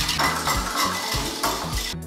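Wire whisk beating instant coffee, sugar and hot water into dalgona foam in a bowl, a fast scraping and clinking of the wires against the bowl, over light background music.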